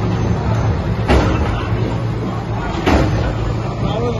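Diesel engines of backhoe loaders running with a steady low drone, with a short clank or knock about a second in and another near three seconds. Crowd voices murmur underneath.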